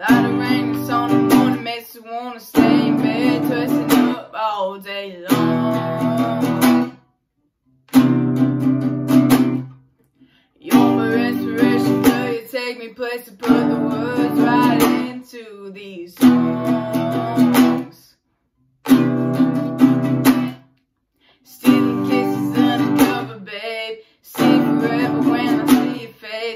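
Classical-style acoustic guitar strummed in chords, playing a song intro in phrases of a few seconds broken by brief silences.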